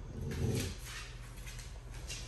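A Dogo Argentino gives one short, low vocal sound about half a second in while tugging on a rope toy.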